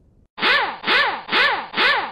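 Sound effect of an intro logo sting: four even strokes, about two a second, each sweeping up and then down in pitch, stopping sharply.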